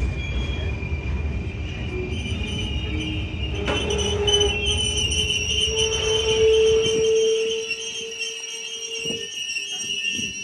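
Container freight train passing at close range, its wagons rumbling over the rails, with a high steady wheel squeal coming in about four seconds in. The rumble fades away in the second half while the squeal carries on.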